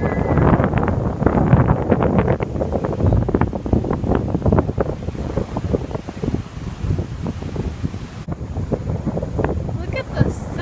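Wind blowing in gusts across the microphone, a low, uneven rumble, with indistinct voices mixed in during the first couple of seconds.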